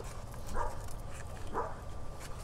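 A dog barking faintly, two short barks about a second apart.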